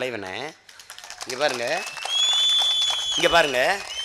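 A man speaking loudly in Tamil through a microphone and public-address system, in short bursts, with a steady high-pitched ringing tone for about a second midway through.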